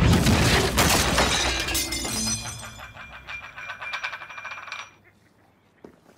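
Crockery and glassware on a café table clattering and breaking: a dense crash in the first second or so, then ringing that fades over the next few seconds.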